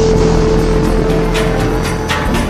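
Soundtrack music holding a long, steady note over an even hiss of heavy rain.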